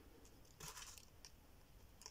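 Near silence, with a few faint rustles and light ticks of small paint tubes being handled over paper confetti in a box.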